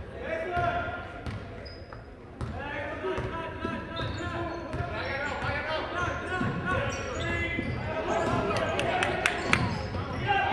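Basketball bouncing on a hardwood gym floor during play, under the voices of spectators and players in the gym. There is a quick run of sharp bounces near the end.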